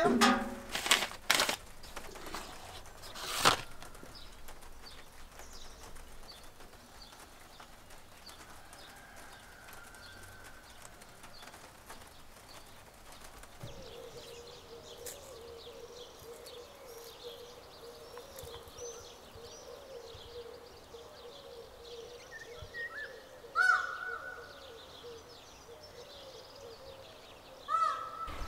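Birds chirping faintly in the background, with a few sharp knocks in the first few seconds and one louder short pitched sound a few seconds before the end.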